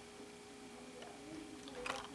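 Quiet room tone with a faint steady hum, and a single short click near the end as a clear plastic lure package is handled.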